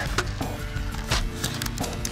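Dry twigs and fern fronds rustling and snapping in several short crackles as they are pressed down into a makeshift bed of sticks, over steady background music.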